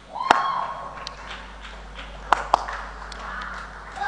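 A few sharp hand claps: the loudest about a third of a second in, and a quick pair just past halfway. A short held vocal cry sounds at the start.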